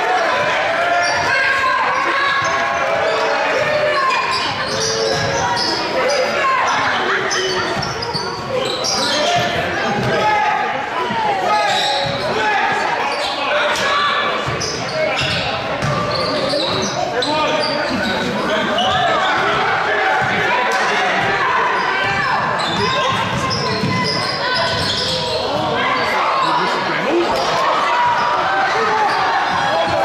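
Basketball game sounds in a gymnasium: a ball bouncing on the hardwood court amid players' and onlookers' voices, echoing in the large hall.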